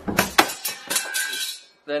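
A quick run of sharp metallic clicks and clinks from a wrench working the steel bolt of a homemade dimple die in a bench vise, with a faint ringing, over about the first second and a half.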